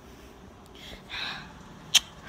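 A short breath through the nose or mouth about a second in, then a single sharp click near the end from the phone being handled.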